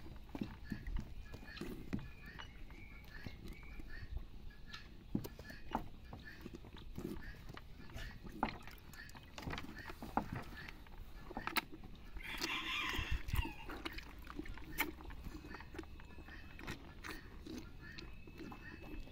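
A calf sucking and slurping milk from a plastic bucket while sucking on a person's fingers, making many small wet sucking clicks and knocks: a calf being taught to drink from a bucket instead of a bottle teat. Chickens can be heard faintly in the background.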